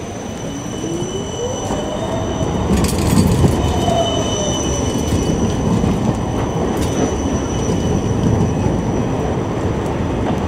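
Siemens Combino low-floor tram pulling away: its traction motors whine rising in pitch over the first couple of seconds, then the tram rolls past with a steady high-pitched wheel squeal over rail rumble that grows louder.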